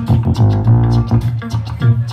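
Live rock band playing an instrumental passage: electric guitar and a Nord Stage keyboard over a bass line with a steady beat.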